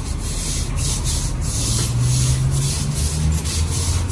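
Broom bristles scrubbing a wet tiled floor in repeated strokes, a scratchy swish with each push.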